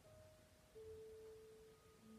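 Faint, soft meditation background music of sustained pure tones. One tone gives way to a lower, stronger one about three quarters of a second in.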